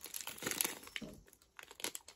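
Plastic sweet packet of Chewits Fruity Jewels crinkling as it is handled and turned over in the hands. The crinkling is densest in the first second, with a short crinkle again near the end.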